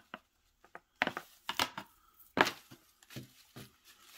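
Handling noise as a USB cable and packaging are handled: a string of short taps and rustles with quiet gaps between, the loudest about two and a half seconds in.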